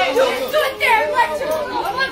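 Several people shouting over one another at once during a scuffle, too tangled for words to be made out.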